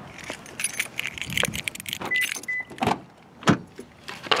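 Car keys jangling with handling noise, two short high beeps about two seconds in, then a sharp click about three and a half seconds in as a car door is opened.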